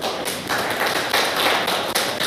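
Audience applauding: many hands clapping in a steady, dense patter.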